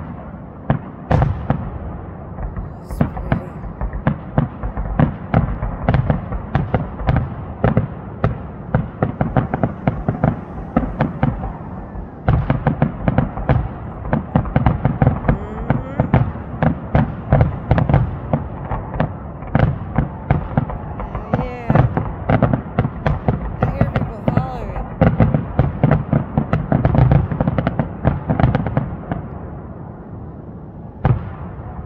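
An aerial fireworks display: a rapid series of shell bursts, bangs and crackles coming several a second, with a brief lull about twelve seconds in.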